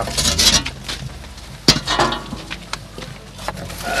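A slab door being worked loose and pulled from the mouth of a masonry oven: scraping at first, then a sharp knock about halfway, with a few lighter knocks after.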